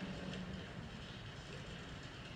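A steady low room rumble with the film clip's soundtrack playing faintly over the room's loudspeakers during a quiet stretch of the scene.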